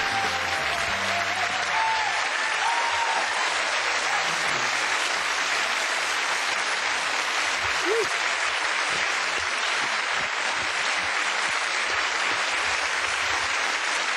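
Studio audience applauding steadily at the end of a song, with the last notes of the backing music dying away in the first two seconds.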